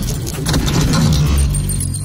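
Logo-reveal sound effects: rapid metallic clattering and jingling over a low rumble, the clatter thinning out about halfway through.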